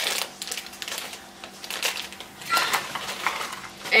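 A plastic popcorn bag crinkling as it is pulled open and handled, in irregular bursts, louder at first and again about two and a half seconds in, with the popcorn shifting inside.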